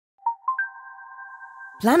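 Electronic chime sting: three tones strike in quick succession, each higher than the last, then hold as a steady chord until a voice comes in near the end.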